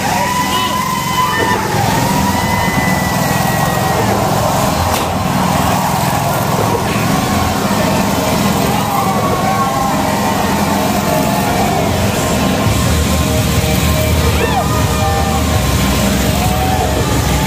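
Motorcycle engines running hard as the bikes circle around the vertical wooden wall of a wall-of-death drum, the engine note rising and falling as they pass. The sound is loud and steady.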